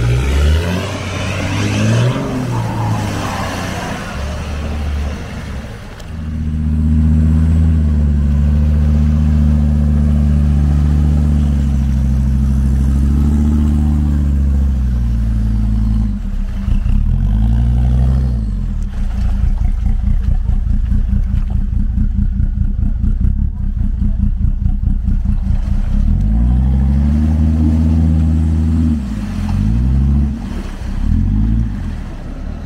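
Mercedes G-Class off-roader's engine revving hard under load in deep mud, held at high revs for long stretches with dips and climbs in pitch, and a stretch of fast, even pulsing in the middle. The first few seconds are noisier, with the engine lower in the mix.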